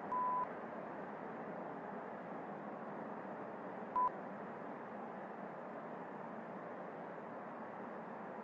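Two short electronic beeps at one steady pitch over a steady hiss. The first beep comes at the start and lasts about a third of a second; the second, shorter one comes about four seconds in.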